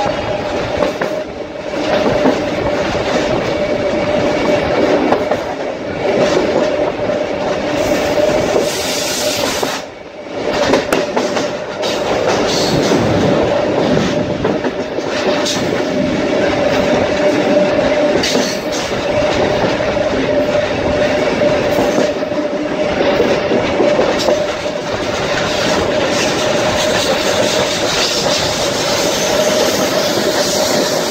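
SuperVia Série 500 electric multiple-unit train running at speed, heard from an open window: wheels clattering on the rails under a steady whine. The sound dips briefly about ten seconds in.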